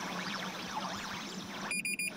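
Cartoon radio static hiss with faint garbled warbling, the sound of a lost transmission. Near the end it cuts out into a short, high electronic beep.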